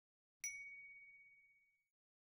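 A single high ding, a chime sound effect, struck once about half a second in and fading away over about a second and a half. It is the kind of 'correct' cue that goes with the 'Good image' green check.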